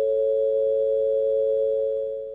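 Two steady pure tones sounding together, an A and the C sharp above it tuned as a pure harmonic (just) major third. They begin to fade just before the end.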